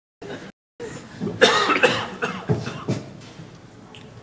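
A man coughing: a quick run of about five coughs, the first the loudest, trailing off after about three seconds.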